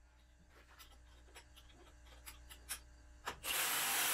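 Small metal clicks and clinks of the stabilizer hardware being handled. Near the end a cordless driver runs a bolt for about a second, loudly.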